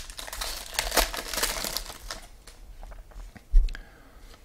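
Foil wrapper of a trading-card pack crinkling and tearing as it is ripped open by hand, densest in the first two seconds and then dying down to a light rustle. A short, low thump sounds near the end.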